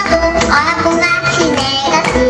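Children's voices singing a Korean song over instrumental accompaniment, continuous and loud.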